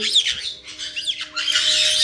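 Caique parrots squawking in several short, sharp calls that glide up and down in pitch, one right at the start and more in quick succession about a second in.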